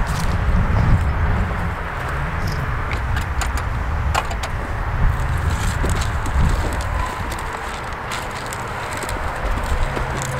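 Wind buffeting the microphone, with scattered light clicks and rattles from a small one-row push corn planter being worked along a row of soil.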